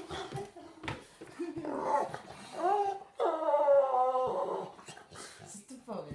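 A dog vocalizing: a run of drawn-out whines and moans that bend up and down in pitch, the longest held for about a second in the middle, with a couple of sharp clicks in the first second.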